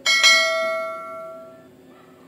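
Notification-bell sound effect: a bright bell ding, struck at once and again a fraction of a second later, ringing on and fading away over about a second and a half.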